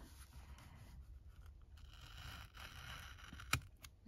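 Craft knife blade drawing through thin envelope paper on a cutting mat: a faint, scratchy scraping, with a sharp click near the end.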